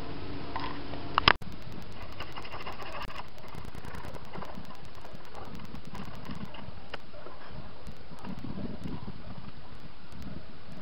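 A sharp knock about a second in, then a steady hiss with faint scrapes and shuffles from handling on a workbench.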